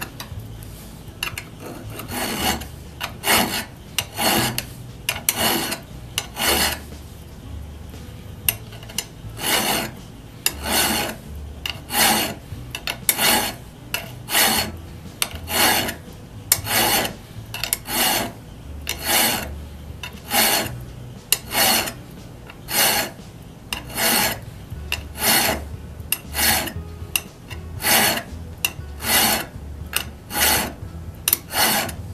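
Flat hand file pushed across the radial cutting edge of a steel auger bit held in a vise, sharpening it. The file makes a steady, even run of rasping strokes, about one a second.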